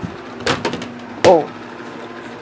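A quick cluster of sharp knocks about half a second in, followed by a short exclaimed "Oh".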